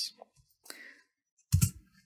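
A few soft clicks of computer keyboard typing as letters are entered into an on-screen crossword grid, with a short, louder vocal sound about a second and a half in.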